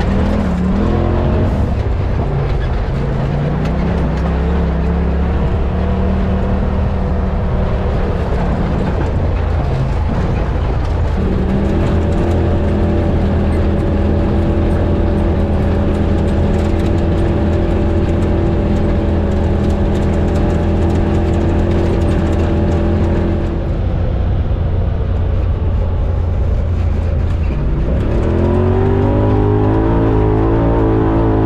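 Turbocharged Polaris RZR side-by-side engine under way on a dirt trail, heard from inside the cab. Its note climbs about two seconds in, holds one steady pitch through the middle, drops away as the throttle is lifted, then rises again near the end.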